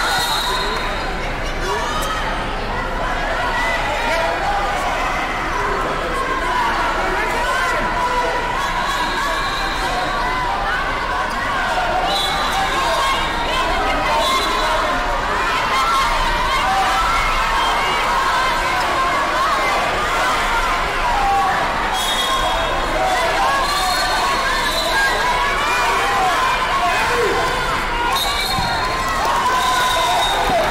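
Sports-hall din from a wrestling tournament: many overlapping voices of coaches and spectators talking and shouting, with occasional thuds and short high-pitched tones now and then.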